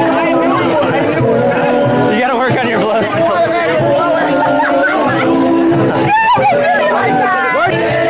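Party music playing loudly with a crowd of people talking and calling out over it.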